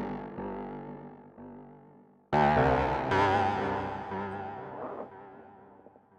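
Native Instruments Massive software synthesizer playing its 'Dissonant Guitar' preset: keyboard notes struck and left to fade, with a new, louder attack a little over two seconds in, their tones wavering in pitch as they die away.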